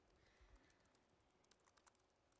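Faint, scattered clicks of typing on a laptop keyboard, barely above near silence.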